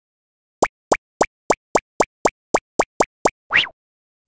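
Cartoon sound effects: eleven quick, evenly spaced plops, about four a second, followed near the end by one short rising swoop.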